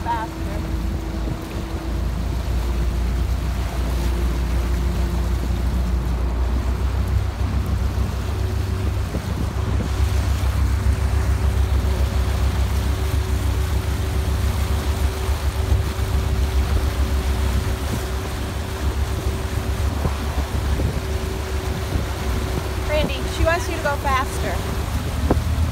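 Motorboat engine running steadily under the load of towing a tube, with the wake churning behind the stern.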